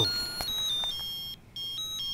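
A simple tune played in high electronic beeps, stepping from note to note every fraction of a second, with a short break about a second and a half in.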